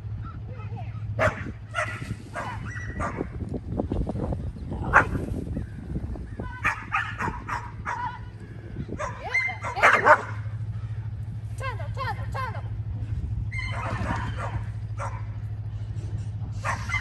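A dog barking and yipping in repeated bursts through the run, the loudest cluster about two-thirds of the way in: the excited barking of a dog working an agility jumping course.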